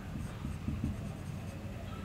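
Marker pen writing on a whiteboard in short, faint strokes.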